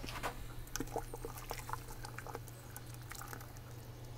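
A spoon stirring shrimp boil in a stockpot: faint liquid sloshing with scattered light clicks.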